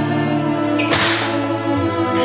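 Bowed strings and cello holding long, sustained notes, with a single sharp whip crack just before a second in that fades quickly.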